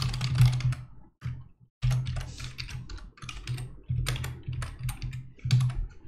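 Typing on a computer keyboard: quick runs of keystrokes, with a pause a little over a second in and short breaks between runs.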